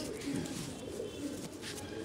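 Faint cooing of domestic pigeons.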